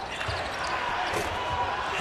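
Live basketball game sound in an arena: a steady crowd din with a few low thuds from the ball and players on the hardwood court.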